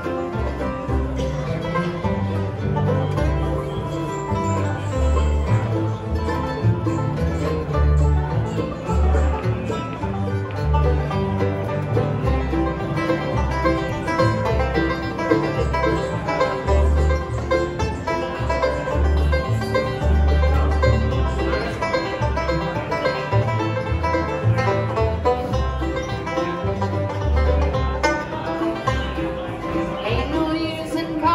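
Acoustic bluegrass band playing an instrumental break without vocals: banjo, mandolin, acoustic guitar and upright bass, with the mandolin leading first and the banjo taking the lead by midway.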